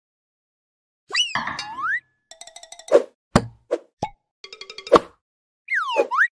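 Cartoon sound effects. After about a second of silence come a swooping whistle-like glide, quick rattling ticks and several sharp plopping, boing-like hits. A second swooping glide follows near the end.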